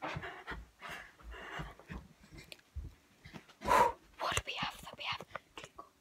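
A girl's breathy whispering and breathing close to the phone's microphone, in short irregular puffs, the loudest about two-thirds of the way through, with a few low bumps from the phone being handled.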